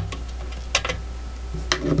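A few short, light clicks of metal as a screwdriver backs a screw out of a Lortone rotary tumbler's sheet-metal motor cover and the cover is lifted off, two clicks about three-quarters of a second in and two more near the end, over a low steady hum.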